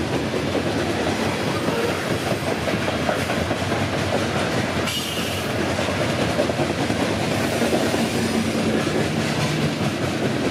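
Steel-wheeled coal hopper cars of a freight train rolling past at close range: a continuous rumble, with wheels clicking steadily over the rail joints.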